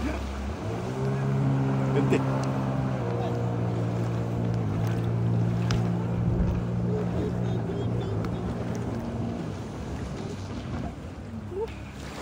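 Yamaha outboard motor on the towing boat running steadily under load as it pulls an inflatable tube, over a rush of water and wind. Its pitch shifts about three seconds in, and it eases off about ten seconds in.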